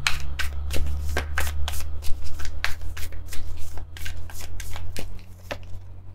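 A deck of oracle cards being shuffled by hand: a quick, irregular run of card-against-card flicks that thins out near the end.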